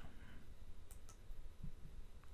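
A few faint, scattered clicks over quiet room tone with a faint low hum.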